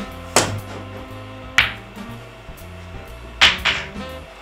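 Four sharp clacks of pool balls being struck on a billiard table, the last two close together near the end, over steady background music.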